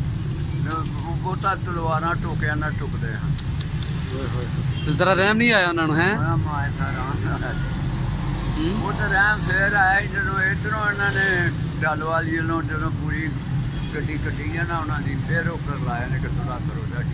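An elderly man speaking in Punjabi throughout, his voice rising higher and louder for a moment about five seconds in, over a steady low background rumble.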